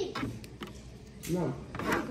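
Plastic wrestling action figures handled and knocked about on a toy ring: a few light taps and some rubbing.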